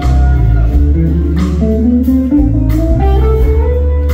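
Live rock band playing: an electric guitar lead with bending notes over bass guitar and drums, the drum hits about every second and a half.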